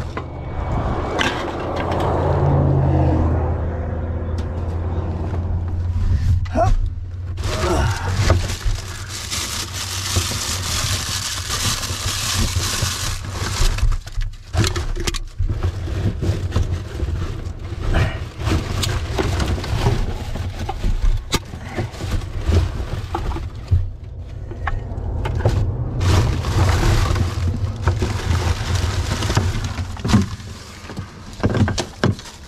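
Rummaging through rubbish in a plastic wheelie bin: plastic bags and wrappers rustling and crinkling, with plastic drink bottles and aluminium cans knocking and clicking as they are handled. A steady low rumble runs underneath.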